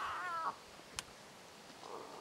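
Lion cub giving a high, wavering mew that ends about half a second in. A single sharp click follows about a second in.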